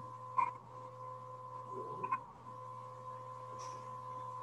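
Quiet pause on a video call: a faint steady hum and thin high tone from the call audio, with two soft clicks, about half a second and two seconds in.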